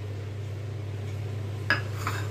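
A steady low hum, with a single sharp clink of a kitchen utensil against a bowl near the end.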